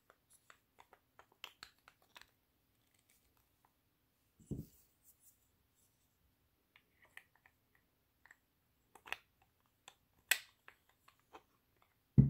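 Scattered small clicks and taps of wooden grip panels being handled and fitted onto a stainless steel revolver frame, with a soft low thump about four and a half seconds in and a sharper knock about ten seconds in.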